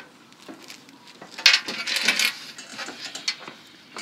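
A short burst of light clinking and rattling about a second and a half in, followed by a few softer clicks: small objects being handled.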